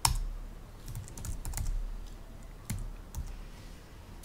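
Typing on a computer keyboard: a run of irregular key clicks, the first one the loudest.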